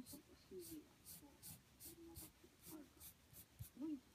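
Pencil sketching on paper: a quick series of short, faint scratching strokes, about three a second.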